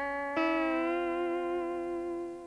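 Fender Telecaster-style electric guitar played clean: a sustained note joined about a third of a second in by a second, higher picked note that sags slightly in pitch, then both ring together as a steady two-note interval.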